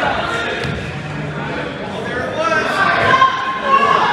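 Several people's voices calling out over one another, echoing in a gymnasium.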